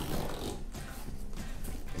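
Background music with a steady low accompaniment, under faint rubbing and stretching of a thick rubber clamping band as it is wrapped around a guitar body.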